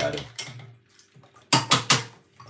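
Three quick, sharp clinks of a metal kitchen utensil against cookware, close together near the end.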